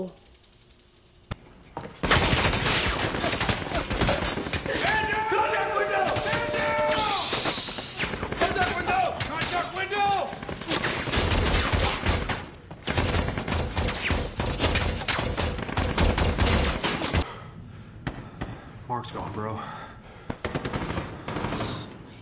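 War-film battle soundtrack: sustained automatic gunfire that starts about two seconds in and runs with heavy rumbling, with men shouting over it for a few seconds in the middle, thinning out near the end.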